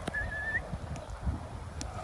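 A short, high whistle of about half a second, wavering slightly and then rising at the end, such as a handler whistles to call a hunting dog.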